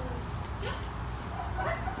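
A husky/sheltie mix dog making short whines or yips, with a woman's brief spoken 'yep'.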